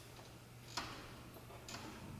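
Two faint clicks about a second apart over a low steady hum: small handling noises as the players settle their instruments and music before playing.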